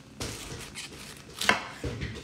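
Chef's knife cutting a head of cauliflower into chunks on a wooden cutting board: a stroke through the florets just after the start, then a sharp knock of the blade on the board about one and a half seconds in, with a smaller tap just after.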